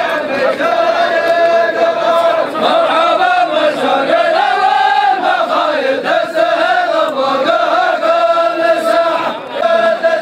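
A large group of men chanting together in unison, a drawn-out melodic line that swells and dips in pitch.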